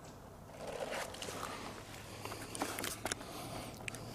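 Footsteps through forest undergrowth with rustling of clothing and gear. Irregular small snaps and crackles start about a second in.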